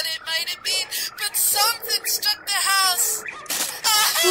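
High-pitched voices shrieking and wailing in short cries that rise and fall and break off every fraction of a second: screams of terror from people caught by the unseen monster.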